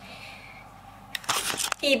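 Brief rustling and rubbing handling noise, about a second in, from a handheld camera being moved and turned around, with a low room hum before it; a spoken word follows at the very end.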